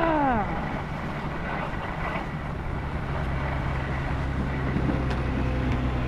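Skis sliding over packed snow with a steady low rumble and wind on the microphone, and a low steady hum joining about halfway through.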